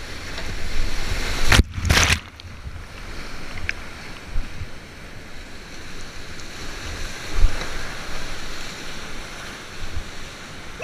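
Rushing whitewater of a big river rapid at high flow, churning around a kayak, with wind on the action-camera microphone. About one and a half to two seconds in, two heavy bursts of water crash over the boat and camera, and there is a dull thump later on.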